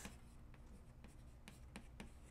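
Chalk writing on a blackboard: faint, irregular taps and short scrapes as a word is written, over quiet room hum.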